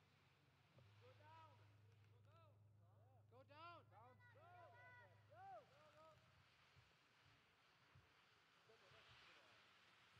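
Near silence: faint background voices over a low steady hum, which stops about five and a half seconds in.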